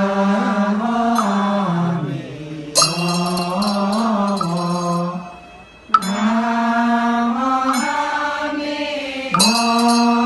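Buddhist chanting for circumambulation, led by a monk's voice through a microphone in long, slowly gliding held notes. A small metal hand chime is struck three times, roughly every three seconds, and each strike rings on.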